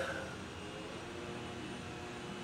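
Steady background hum of an air conditioner running in a small room, with faint steady tones and no sudden sounds.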